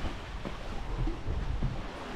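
Wind rushing over the microphone with a low rumble, over the steady wash of sea waves.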